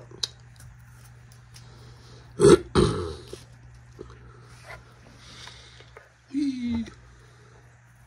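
A man's short wordless vocal sounds: two quick loud bursts, then a brief falling grunt like a burp, over a steady low hum.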